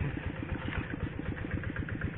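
A small engine running steadily, a regular chugging of about ten beats a second.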